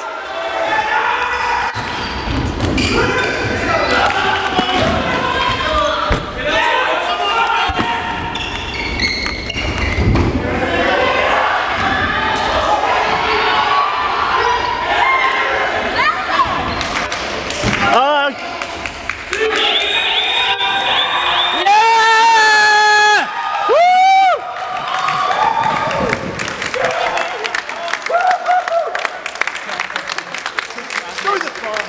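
Indoor futsal game: the ball thudding on the hardwood court among players' shouts, echoing in a large hall. About two-thirds of the way through come several loud, long held cries.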